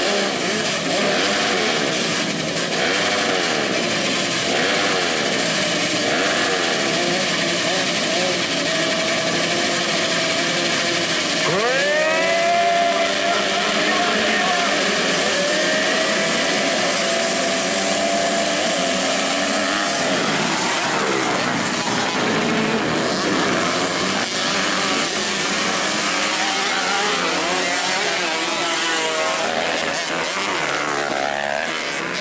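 A pack of motocross bikes revving at the starting gate, their engine notes wavering against each other. About twelve seconds in the revs sweep sharply up together as the gate drops and the pack launches, and engines stay held at high revs for several seconds before the sound breaks up as the bikes spread out.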